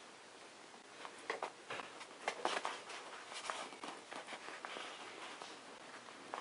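Faint rustling and irregular light clicks of thin insulated wires being handled by hand, their stripped ends twisted together.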